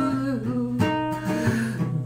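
Music: an acoustic guitar playing an original song, with pitched notes held and sliding over repeated strums.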